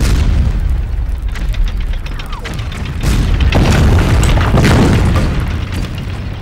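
Explosions: a sudden blast at the start with a heavy rumble, then a second, louder blast about three seconds in that rumbles on before easing near the end.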